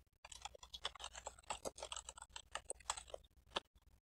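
Faint typing on a computer keyboard: a quick, irregular run of keystrokes.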